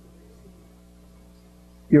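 Low, steady electrical mains hum made of several fixed low tones. A man's voice starts right at the end.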